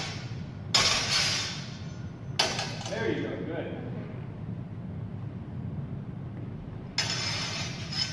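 Steel longsword blades clashing in sparring: three sharp metal strikes, about a second in, at about two and a half seconds, and about a second before the end, each ringing on briefly with a bright high tone.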